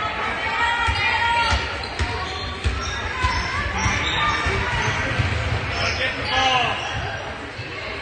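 A basketball bouncing repeatedly on a hardwood gym floor as it is dribbled up the court, with players and spectators calling out in the echoing gym.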